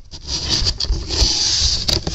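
Handling noise from a handheld camera: fingers and skin rubbing and knocking on the camera body right by its microphone, a rough rustling hiss broken by a few sharp clicks.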